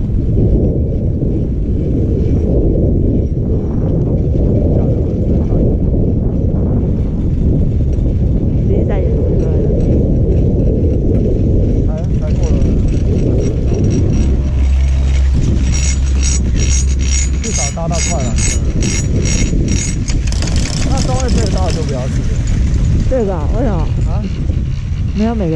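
Skis sliding over snow, with heavy wind noise on a helmet camera's microphone. In the second half, passing a chairlift tower, a rapid, evenly repeating mechanical clatter comes in, most dense for a few seconds and then fading.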